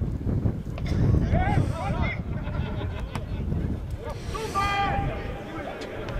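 Wind rumbling on the microphone, with distant shouts from people at a football pitch; one long, held shout comes about four and a half seconds in.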